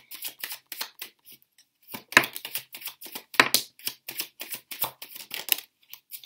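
Tarot cards being handled and dealt onto a wooden table: a run of sharp card clicks and slaps, a few in the first second, then quick and dense from about two seconds in.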